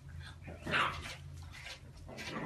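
A pug puppy giving one short bark at its own reflection in a mirror, about two-thirds of a second in.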